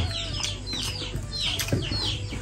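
Birds calling: a run of short, high chirps, each falling in pitch, repeated several times, over a faint steady hum.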